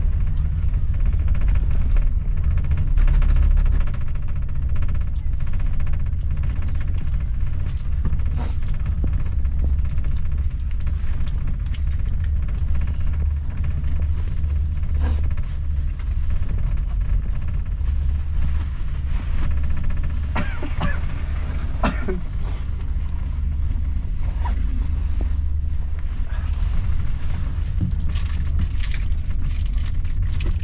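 Steady low rumble inside a moving gondola cabin as it rides along the haul rope, with a few brief clicks and knocks in the cabin.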